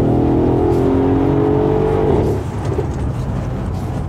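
Mercedes-AMG GLS 63's 5.5-litre biturbo V8 accelerating hard, its note rising steadily in pitch. A little over two seconds in the note breaks off suddenly, as at a gear change, and a rough, uneven rumble from the exhaust follows.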